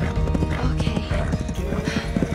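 Hoofbeats of a ridden horse moving at a quick pace, heard under a background song.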